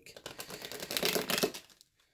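A deck of tarot cards being shuffled by hand: a rapid, clattering run of card flicks that stops about a second and a half in.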